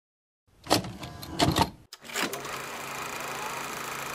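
A few short clattering knocks and rattles, then a steady low background hum with faint steady tones.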